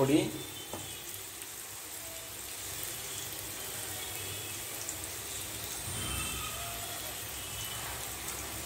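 Sliced onions and tomato frying in oil in a pan: a soft, steady sizzle.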